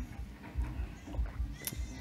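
Faint movie soundtrack playing in the background: a low, irregular pulsing rumble with a few soft clicks.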